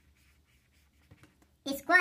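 Felt-tip marker rubbing faintly on paper in quick colouring strokes. Near the end a voice, much louder, says "orange color".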